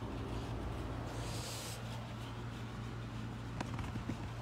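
Car engine idling with a steady low hum, heard from the open car. About a second in there is a brief rustle as something is set down, and a sharp click near the end.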